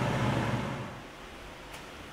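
Steady rushing noise with a low hum from the stove area. About a second in it cuts away to quiet room tone, with a faint click near the end.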